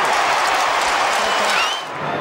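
Football stadium crowd cheering and applauding a goal, a dense steady roar that drops away shortly before the end.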